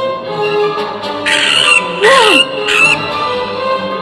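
Orchestral background music with a creature's screech sound effect over it: a hissing shriek a little after the first second, then a shrill cry that rises and falls in pitch about two seconds in, the loudest moment.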